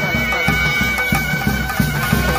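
Live traditional procession music: a reed wind instrument holds steady, droning notes over drums beaten about four times a second.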